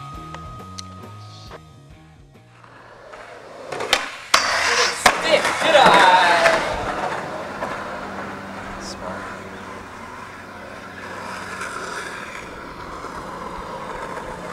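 Skateboard wheels rolling on concrete, with two sharp board clacks about four and five seconds in and loud voices during the loudest stretch around the middle, then steadier rolling.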